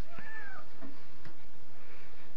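A cat's single short meow near the start, rising then falling in pitch and lasting about half a second.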